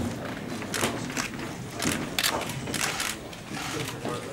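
Camera shutters clicking in an irregular scatter over low background chatter.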